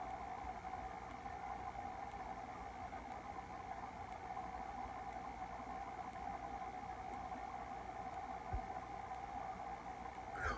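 Faint steady room tone: an even hiss with a steady hum. A small low thump about eight and a half seconds in.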